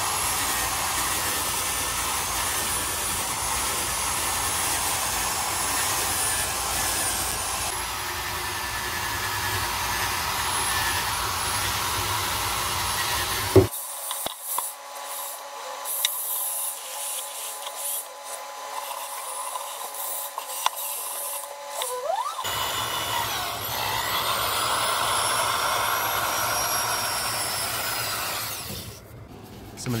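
Power drill spinning a wire wheel brush against rusted steel underbody panels, a whining, scraping whir as it strips off flaky rust. About 14 s in the sound thins out for several seconds. Around 22 s it comes back full, with the motor's pitch rising and falling as the drill speeds up and slows. It drops away just before the end.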